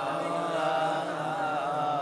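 Quiet, wavering chanted voice carried over a microphone and loudspeaker system, in a pause between the louder sung lines of a sermon's recitation.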